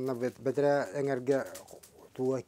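Only speech: a man talking in a small room.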